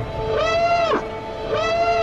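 A wailing, siren-like tone from the trailer's sound design, sounding twice: each call slides up, holds for about half a second and falls away, over a faint steady hum.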